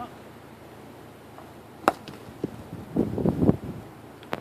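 Hard knocks and scrapes as blocking is pulled from under a trailer wheel on rocky ground: a sharp knock about two seconds in, then a quick cluster of knocks and scraping about three seconds in.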